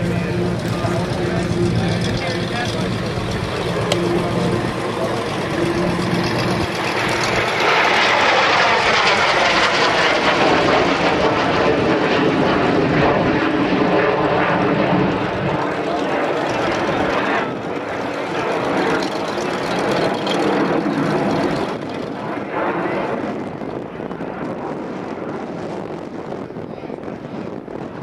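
Learjet's twin jet engines roaring during a low aerobatic pass. The roar swells from about seven seconds in with a sweeping, phasing whoosh as the jet goes by, peaks over the next several seconds, then fades away in steps toward the end.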